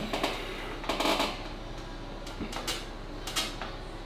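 A back-pressure cable-and-pulley lifting machine loaded with weights gives a few faint, scattered clinks and knocks while a heavy lift is pulled and held.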